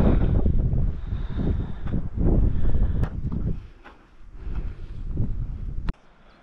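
Strong wind buffeting the microphone in gusts, a deep rumble that eases about four seconds in and then picks up again.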